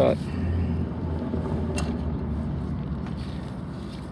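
Steady low hum of an engine running, under a haze of outdoor background noise, with one light click a little under two seconds in.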